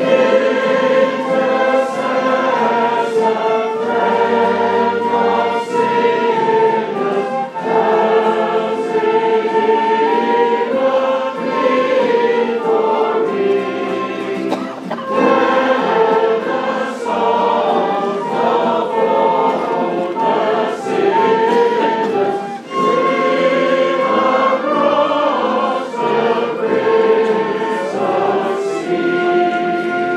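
A choir singing a slow hymn in chorus, with notes held for a second or two.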